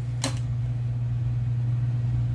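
A steady low hum, with one brief sharp sound about a quarter of a second in.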